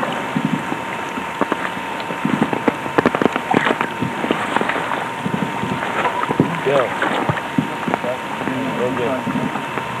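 Indistinct voices of a group of soldiers with scattered knocks and rustles, densest in the first few seconds, over a steady faint whine.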